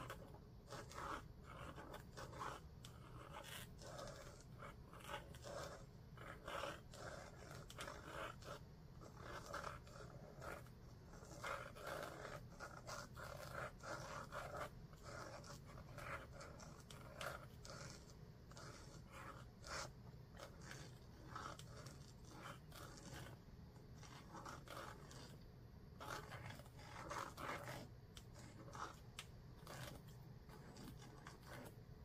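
Faint scratching of a fine-tipped Pilot G-Tec-C4 gel pen drawing on watercolour paper, in many short strokes with brief pauses, over a steady low hum.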